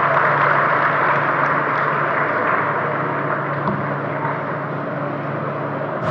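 Audience applauding after a speech, a dense steady clapping that slowly fades, with a low steady hum underneath.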